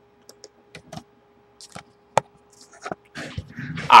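A few short, scattered light clicks over a faint steady hum, the loudest a little past halfway, with a soft breath just before speech resumes at the very end.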